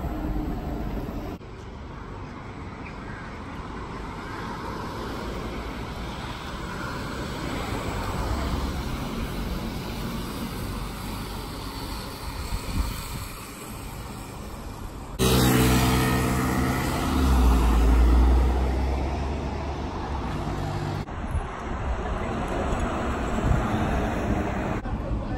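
Electric city buses and street traffic heard outdoors: mainly tyre and road noise from buses driving by, with no engine sound. The sound changes abruptly several times. A louder stretch past the middle holds a steady low hum and rumble.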